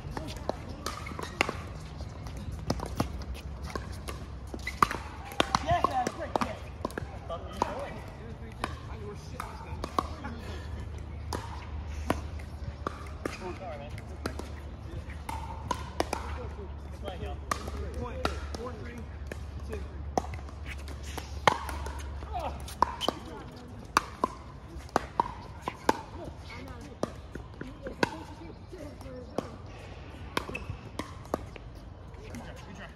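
Pickleball paddles striking the hollow plastic ball, sharp pops at irregular intervals from this court and the courts around it, mixed with the ball bouncing on the hard court. Players' voices chatter in the background.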